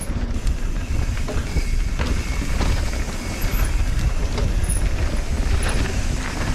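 Wind buffeting a GoPro microphone with a steady low rumble, over a mountain bike's tyres rolling on a packed dirt trail at downhill speed, with a few light rattles from the bike.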